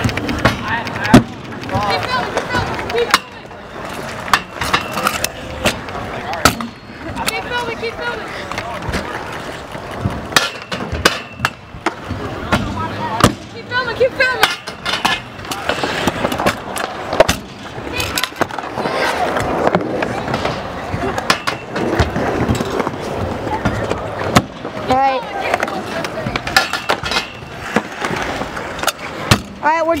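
Stunt scooter wheels rolling over concrete and wooden ramps, with repeated clacks and bangs of the deck and wheels hitting the ramp and ground. A sharp bang about a second in is the loudest.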